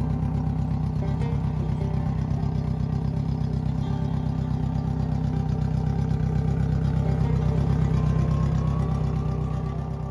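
Yamaha 115 four-stroke outboard engines running at a steady idle out of the water while being flushed through with fresh water from a hose. The engine sound fades near the end as music comes in.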